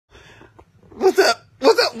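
Two short, sharp vocal bursts from a man about a second in, just before he starts talking.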